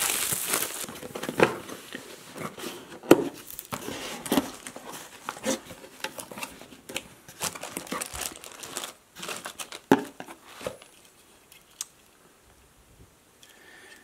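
Clear plastic shrink-wrap crinkling and tearing as it is pulled off a product box, followed by cardboard flaps and plastic-bagged parts rustling and knocking as the box is opened and unpacked. A few sharp clicks stand out, and the handling dies down to quiet rustles in the last few seconds.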